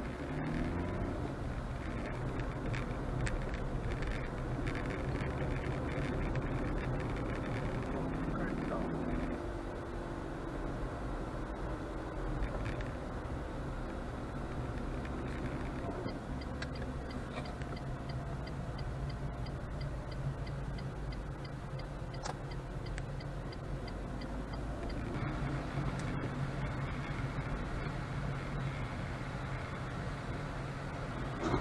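Car engine and road noise heard inside the cabin, with the engine note rising as the car pulls away from a near standstill. Partway through, a fast, regular ticking runs for several seconds.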